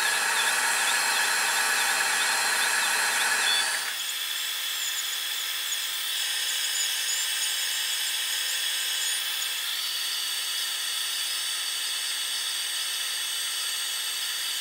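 Wainlux L6 diode laser engraver cutting EVA foam: the gantry's stepper motors whine, the pitch wavering as the head traces curved outlines, over a steady hiss. The sound changes abruptly twice, about four and ten seconds in.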